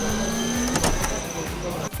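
Electronic transition sound effect laid under an animated title graphic. A low hum and a high whistle-like tone are held together, the low one stopping partway through. A sharp click comes about a second in.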